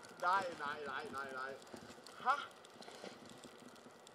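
A person's voice in a quick run of short, rhythmic syllables that fades out about a second and a half in, with one brief vocal sound a little after the middle; the second half is near silence.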